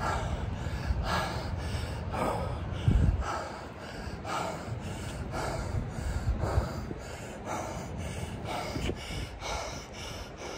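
A man breathing hard from exercise: quick, even, audible breaths, about one and a half a second. A low thump about three seconds in.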